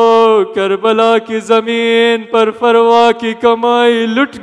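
A man's voice chanting a mournful lament in long held notes, each phrase sliding down in pitch at its end before a short break.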